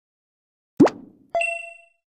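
Cartoon-style sound effects on an animated end card: a short plop rising in pitch about a second in, then a bright bell-like ding that rings and fades over about half a second.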